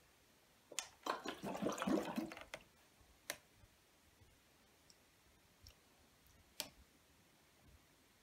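Fluid sloshing inside the partly filled plastic bottles of a bottle-and-hub Bhaskara's wheel as it turns, with a burst of sloshing and plastic clicks about a second in. Single sharp clicks follow around three seconds in and again near seven seconds.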